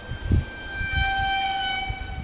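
A brief low thump, then a steady high-pitched single-note tone, horn- or whistle-like, that starts about half a second in and holds one pitch until the end.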